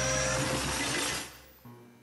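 Electronic music and sound effects from a promotional video's soundtrack, a dense shimmering wash over steady low tones, which fades out about a second and a half in, leaving near silence.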